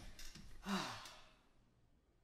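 A man sighing: a short breathy exhale with a low voice sliding down under it, about half a second in.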